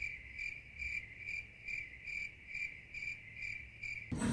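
Cricket chirping sound effect: an even, high chirp repeating a little over twice a second, with all other sound cut out. It is the comic 'crickets' gag marking an awkward silence after a joke that fell flat.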